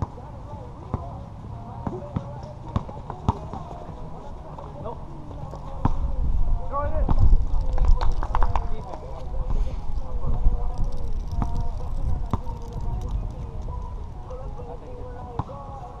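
Basketball bouncing on an outdoor hard court, a scattering of sharp knocks, with players' voices in the background. A loud low rumble comes in about six seconds in and fades out again a few seconds before the end.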